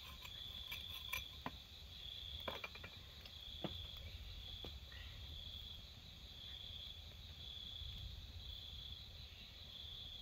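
Night crickets trilling in a steady high chorus that pulses about once a second, with a few sharp clicks in the first half.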